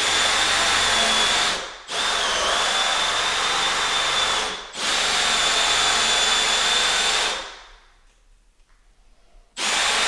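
Cordless drill spinning a 2-1/8-inch hole saw into a door, its motor running with a steady high whine as the saw cuts the bore for a doorknob from one side. It runs in three stretches with two very brief breaks, winds down for about two seconds of quiet, then starts again near the end.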